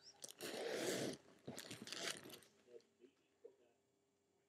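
Plastic sleeve pages in a ring binder crinkling and rustling as a page is turned: two rustles in the first half, then a few faint clicks.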